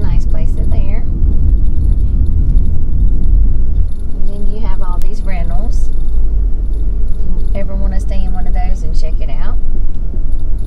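Steady low road and engine rumble inside a moving car's cabin, with indistinct voices coming and going.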